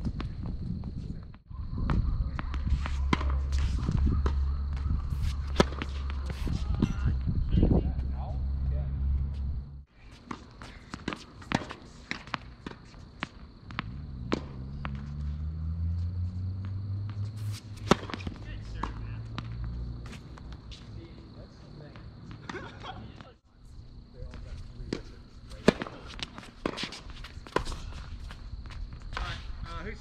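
Tennis rally on an outdoor hard court: sharp racket strikes on the ball, ball bounces and sneaker footsteps, with a steady low hum underneath. The sound breaks off abruptly a few times between points.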